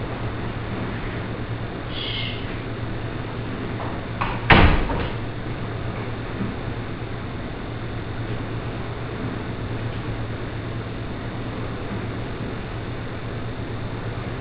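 A closet door pulled shut with one sharp knock about four and a half seconds in, after a fainter rattle about two seconds in, over a steady low electrical hum.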